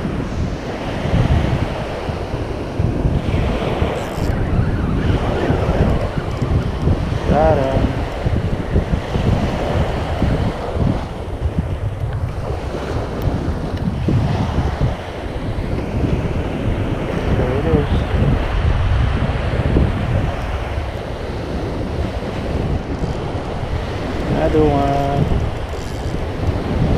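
Wind buffeting the microphone over the steady wash of small waves breaking onto a sandy beach.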